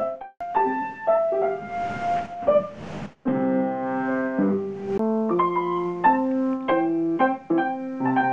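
Piano music: a melody of separate notes over chords, with a short break about three seconds in before it goes on with fuller chords.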